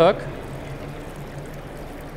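The end of a spoken word, then a steady, even background noise with no distinct events.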